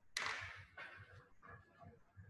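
Two short bursts of rustling handling noise close to the microphone, as the laptop or webcam is adjusted: the first, louder one lasts about half a second, and the second, weaker one follows straight after it.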